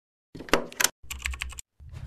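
Sound effect of sharp clicks like keyboard typing, in two quick runs, followed near the end by the onset of a deep thud.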